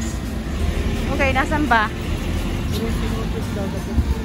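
Steady low rumble of motor vehicles idling, with a voice briefly saying "so" a little over a second in.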